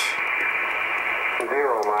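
Icom IC-R8500 communications receiver in upper-sideband mode giving steady static hiss, its narrow passband cutting off the high frequencies; about a second and a half in, a voice comes through the receiver.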